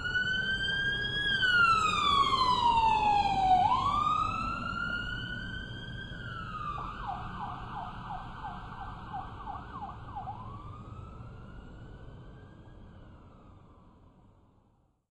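Police siren sound effect wailing slowly up and down twice, switching to a fast yelp for a few seconds, then one more rise, fading steadily away until it is gone, over a low rumble.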